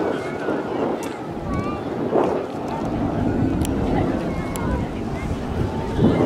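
Steady rumbling roar of the BAC Jet Provost T.3A's Rolls-Royce Viper turbojet as it flies its display, mixed with wind on the microphone.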